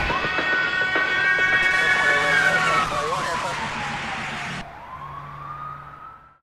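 A police siren wailing: its pitch rises, holds, sinks slowly, then rises again near the end as the sound fades away.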